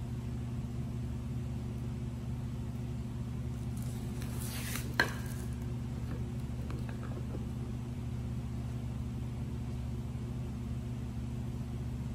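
Protective film being peeled off a flexible clear plastic sheet: a brief crackling rustle with one sharp click about five seconds in, over a steady low hum.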